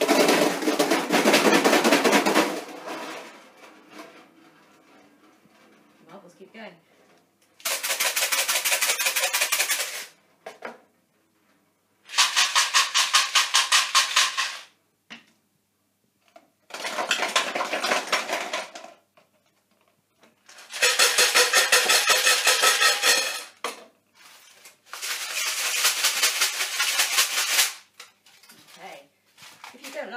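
Homemade shakers, household containers filled with things like rice, pasta, paper clips and pencils, shaken one after another: six bursts of fast, even rattling, each about two to three seconds long with short pauses between. The first, a metal tin, sounds lower and fuller than the others.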